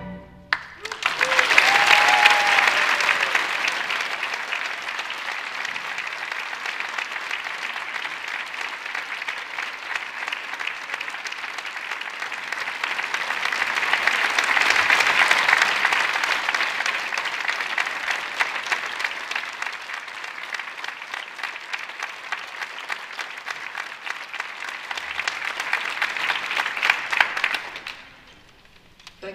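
Concert audience applauding after an orchestra piece, with a short high call from the crowd about two seconds in. The applause swells twice, once at the start and again midway as the players stand.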